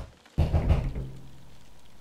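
A sudden loud bang about a third of a second in, fading out over a low steady hum of film-score drone.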